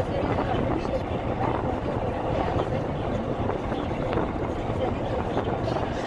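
Steady road and engine noise of a car driving, heard from inside the cabin, with faint indistinct voices underneath.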